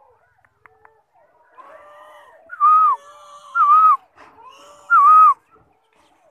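A bird calling close by: softer warbled notes, then three loud, identical calls about a second apart, each a short whistle-like note that dips and hooks in pitch.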